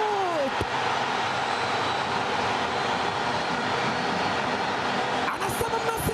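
Football stadium crowd cheering in a steady roar just after a goal, with a long drawn-out shout starting near the end.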